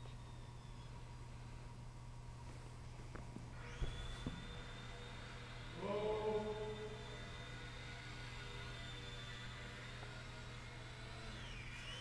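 Small electric RC plane's motor and propeller whining: a high steady whine comes in about three and a half seconds in as the throttle opens, holds, and sags in pitch near the end. A few soft knocks come just before it, over a steady low hum.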